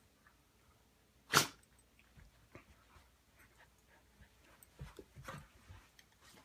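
A dog blows out sharply through its nose once, about a second and a half in, then makes several softer sniffs and snuffles near the end.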